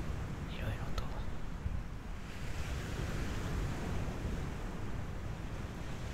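Ocean waves washing on a beach: a steady, continuous surf.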